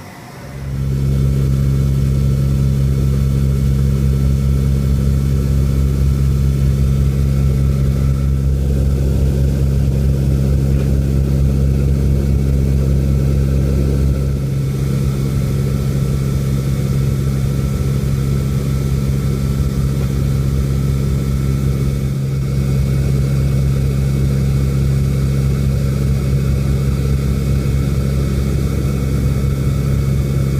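Inside the cabin of an LC-130 Hercules ski plane, its four turboprop engines give a loud, steady drone. The deepest part of the drone drops away about halfway through.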